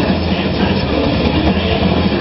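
Hard rock band playing live, with distorted electric guitars, bass, keyboards and drums in a dense, loud, unbroken wall of sound.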